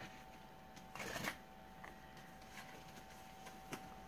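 Quiet rustling of paper and card as a tied paper guide booklet is handled and untied, with one louder rustle about a second in and a few faint ticks after. A thin steady tone hums underneath.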